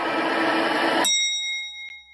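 A fading wash of noise, then about a second in a single bright, bell-like ding that rings and dies away: an editing chime that marks the cut to the end card.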